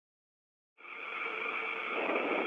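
Silence, then a steady static hiss from the broadcast audio feed that comes in just under a second in.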